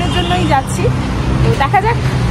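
A woman talking over the steady low rumble of road traffic.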